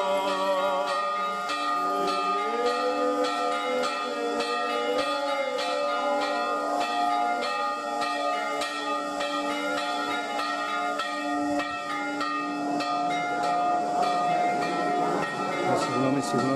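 Church bells pealing in quick, even strikes, the ringing tones overlapping. A voice chants over the bells in the first half.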